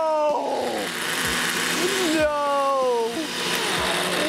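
Countertop blenders running, churning a thick mix of ice cream and cherries, with a steady whir throughout and a whine that slides down in pitch twice.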